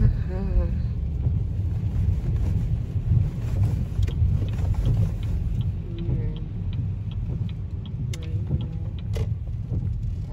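Steady low road and engine rumble inside a moving car's cabin, with a regular light ticking in the second half and faint voices in the background.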